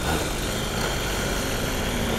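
Mini motorcycle engine running steadily under way, an even drone with no change in pitch.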